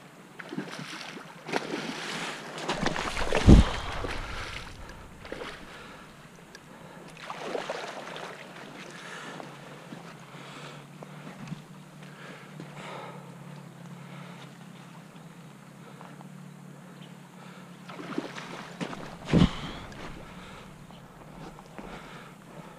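Wind buffeting the microphone over running creek water, with two sharp knocks: a loud one about three and a half seconds in and another a few seconds before the end.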